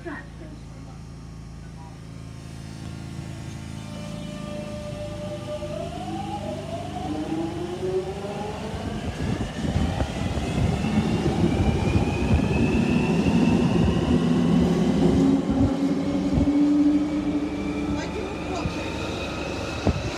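London Underground Jubilee line train pulling away from a station, heard from inside the carriage. After a few seconds of steady hum, the traction motors' whine rises steadily in pitch in several tones while the rumble of the wheels grows louder as the train gathers speed.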